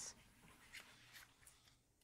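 Faint rustle of a paperback picture book being opened, paper sliding with a few soft clicks.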